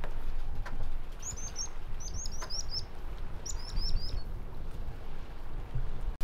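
A small bird chirping in three quick runs of short, falling, high-pitched notes, over a low steady rumble.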